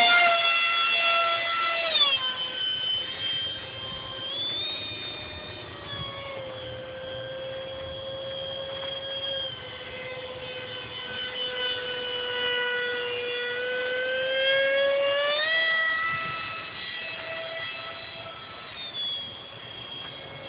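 50mm electric ducted fan of a radio-controlled Blue Angels jet model in flight: a high, steady whine, loudest at the start, that drops in pitch about two seconds in, sinks slowly as the jet flies off, and climbs again around fifteen seconds in as the throttle and distance change.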